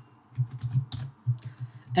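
Computer keyboard typing: a quick run of keystrokes starting shortly after the beginning.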